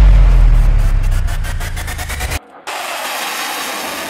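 A sudden deep rumble that fades over about two seconds. After a short cut it gives way to the steady engine noise of a jet fighter in flight.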